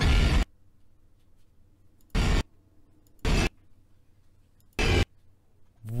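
Four short, loud bursts of harsh noise from a horror short's soundtrack, each under half a second, with near silence between: jump-scare sound effects as the figure appears.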